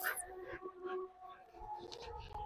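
A dog whining faintly: a thin, steady high-pitched whine.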